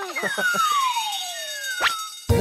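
Cartoon transition sound effect: a whistle-like tone gliding steadily down in pitch for about a second and a half. Near the end it is crossed by a shorter falling tone and a quick upward zip.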